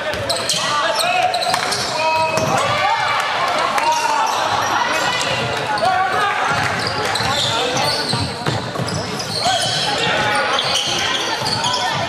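Live indoor basketball game sound: a basketball bouncing on a hardwood court among players' and spectators' shouts and calls, echoing in a large gym.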